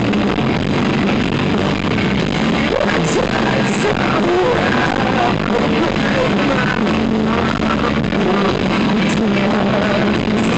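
A grunge rock band playing live and loud: electric guitars, bass guitar and drums together in a continuous, unbroken passage.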